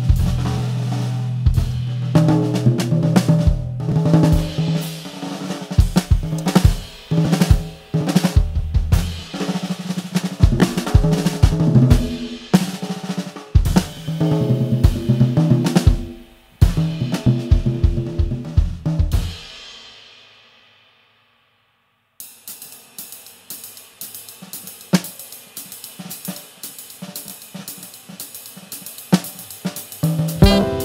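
Smooth jazz background music with a drum kit and bass playing a groove. It fades out about two-thirds of the way through, then after a moment of silence the next track starts quietly with light, steady ticking percussion.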